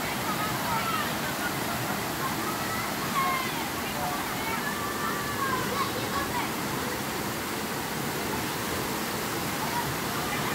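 Creek water running steadily in a shallow sheet over a smooth sloping rock slide, an even rushing noise.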